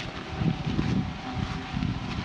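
Wind buffeting the microphone outdoors, a rough rumbling noise that rises and falls in uneven gusts.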